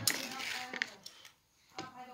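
A short rustle fading over about a second, with a light click or two, as the paper lid of an instant noodle cup is folded back and chopsticks go into the noodles; a man's voice starts again near the end.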